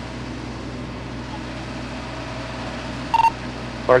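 A short beep from a police two-way radio about three seconds in, over a steady low mechanical hum; a voice starts right at the end.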